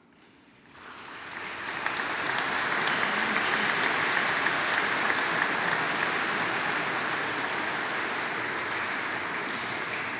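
Congregation applauding in a large church: the clapping starts about a second in, swells quickly and then holds steady.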